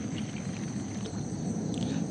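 Daiwa Alphas Air TW 2020 BFS baitcasting reel being cranked quickly on a retrieve, a soft steady whir, with crickets chirping steadily in the background.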